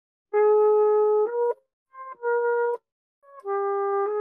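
Trumpet playing a slow phrase of held notes in three parts with short gaps: a note held for about a second that steps up at its end, a short note picked up by a brief grace note, then a lower long note that starts just before the end.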